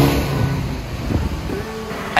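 Suzuki S-Cross 1.6 DDiS diesel driving on a wet road: its steady low engine hum fades over the first second, leaving the hiss of tyres on wet tarmac.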